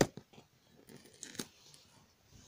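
Fingers picking and peeling at a sticker and tear strip on a cardboard box: a sharp click at the start, then scratchy tearing and crackling of paper and cardboard with another sharp snap about a second and a half in.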